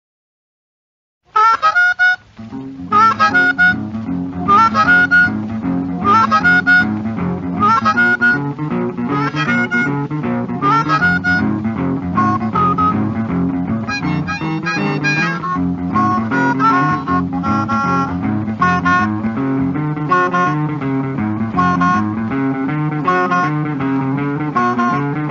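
Blues harmonica playing a repeated bending riff over a boogie-woogie guitar and bass line. The record starts after about a second of silence.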